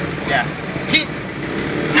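Steady engine drone and road noise heard from inside the open passenger bed of a moving songthaew pickup-truck taxi.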